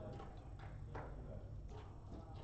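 Backgammon checkers clicking against the board as a player handles them: a few short, sharp clacks about half a second apart, the loudest about a second in, over a steady low hum.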